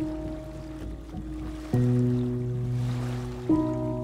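Slow relaxation music: three piano chords struck about every two seconds, each left to ring, over a faint wash of sea waves.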